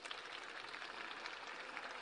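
Audience applauding, heard faintly as a steady patter.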